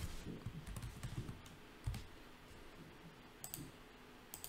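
Faint computer keyboard typing and mouse clicks: a few scattered keystrokes, a soft thump about halfway through, and a short cluster of clicks near the end.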